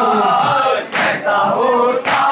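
Men chanting a Muharram mourning lament (noha) loudly together: a lead voice over a microphone with the crowd joining in. The chant breaks off briefly about a second in, then picks up again.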